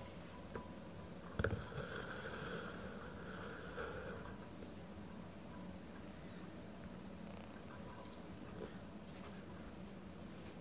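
Bodum Pebo glass vacuum coffee maker cooling off the heat: faint watery bubbling and hiss from the glass chambers. A single knock about a second and a half in.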